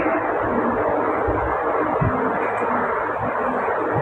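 Steady background hiss and hum with no speech, even and unchanging throughout.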